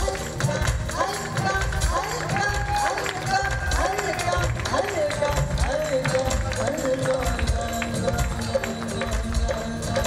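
Female lead vocalist singing an ornamented, gliding melody of a qawwali-style song live, over a band keeping a steady beat on drums and tabla.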